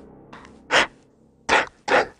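A lull in electronic dance music: low sound with three short hissing hits, about a second in, then twice close together near the end.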